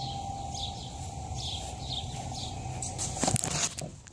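Small birds chirping in short repeated calls over steady outdoor ambience. Near the end come a few quick footsteps on grass and knocks of a hand grabbing the phone.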